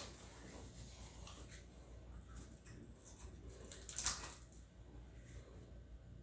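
Quiet hand-handling sounds as a paper towel is used and a smoked chicken wing is picked up, with one brief rustle about four seconds in.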